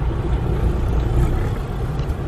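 Car's engine and road rumble heard from inside the cabin as it drives through a gate into a driveway: a steady low rumble.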